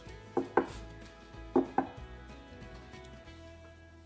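Four sharp knocks in two quick pairs about a second apart, each with a short ringing tone, over soft background music.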